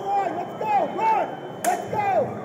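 Men shouting loudly, with one sharp smack about one and a half seconds in.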